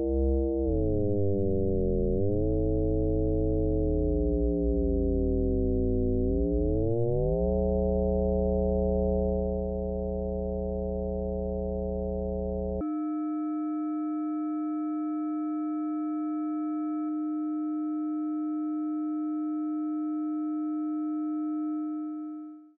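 Computer-generated FM synthesis tone from a Pure Data patch: a sine oscillator frequency-modulated by a second sine oscillator, giving a dense stack of sidebands. The sidebands glide down and then back up as the modulator frequency is dragged. About thirteen seconds in, the modulator is set to a new value and the sound switches abruptly to a sparser, brighter tone with one strong low pitch and a few higher partials. It starts to fade out at the very end.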